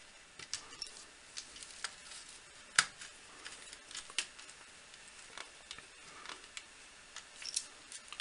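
Small screwdriver tightening wires into a screw terminal, with faint scattered clicks and light scrapes of handling, and one sharper click a little under three seconds in.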